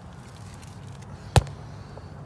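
A single sharp click or knock a little past the middle, over a faint steady low hum.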